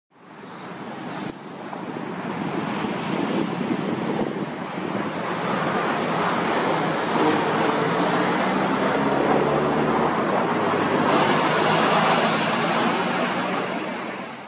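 Steady rushing wash of ocean surf that fades in at the start and swells and eases gently. A faint low hum sits under it partway through.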